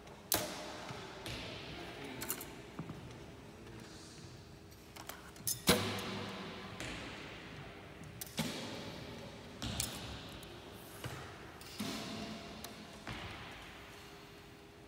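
Target bows shot in turn in a large sports hall: six sharp string releases over about thirteen seconds, each ringing out in the hall's echo, with smaller clicks and knocks between them.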